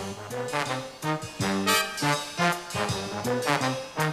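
Big band brass section, trumpets and trombones, playing a swing tune in short accented phrases over a walking bass line.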